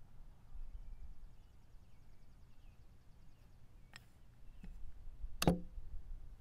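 A few sharp clacks of a blitz chess move: a plastic piece set down on the board and the chess clock button pressed. The last clack, about five and a half seconds in, is the loudest.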